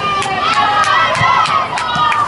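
Several high-pitched voices shouting and calling over one another, as players and onlookers do at a football match, with a few sharp knocks among them.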